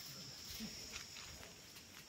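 Faint, steady, high-pitched drone of insects, with a few faint rustles.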